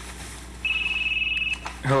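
Cell phone ringing: one steady, high electronic tone of about a second, a little way in.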